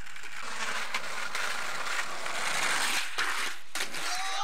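Skateboard wheels rolling over rough, gritty asphalt, a continuous loud grinding roll. There are a few sharp clacks, several of them close together in the last second.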